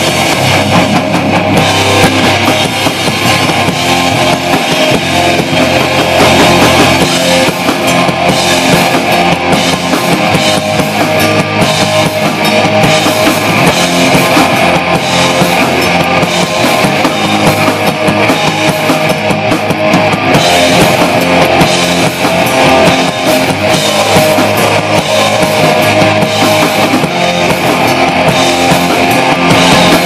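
A live rock band playing loudly without a break: electric guitars over a Yamaha drum kit.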